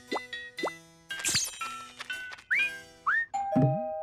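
Cartoon underscore of short plucked-sounding notes and quick rising pitch slides, then a two-tone ding-dong doorbell about three seconds in, its tones ringing on and slowly fading.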